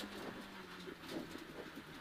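Suzuki Swift rally car's engine, faint and muffled inside the cabin: a low steady drone that fades about half a second in, leaving faint rattles and road noise.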